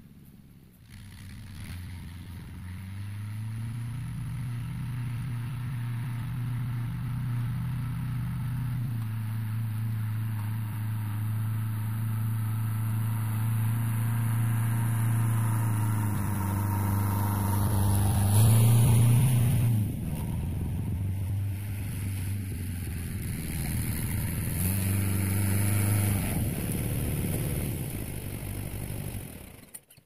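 Fiat 72-93 tractor's diesel engine running, growing louder as it drives closer, with a brief rise in revs about two-thirds of the way through before settling back to a steady run. The sound stops abruptly near the end.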